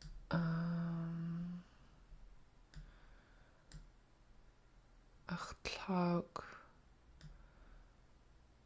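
A long, level hummed "um", then a few scattered computer mouse clicks as a video's seek bar is dragged, with a short voiced sound about five and a half seconds in.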